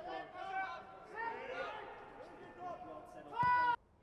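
Faint shouts and calls from players on the pitch, with no crowd noise, then one louder, high-pitched shout near the end before the sound cuts off abruptly.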